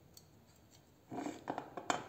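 A glass bottle and a small spatula being handled on a table: a few short scrapes and clinks from about a second in, ending in a sharp knock as the bottle is set down.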